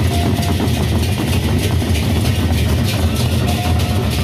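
Gendang beleq ensemble playing: large Sasak barrel drums beaten in a dense, continuous low rumble, with quick cymbal strokes on top.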